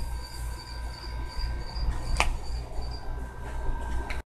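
Outdoor background sound with a steady low rumble, a faint high pulsing chirr, and a single sharp click about two seconds in.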